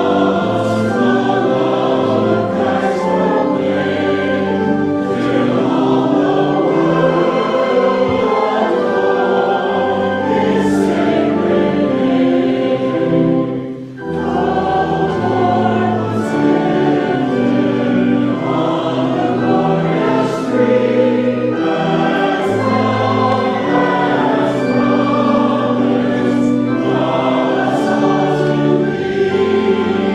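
Choral music: a choir singing slow, held chords, with a short break about fourteen seconds in.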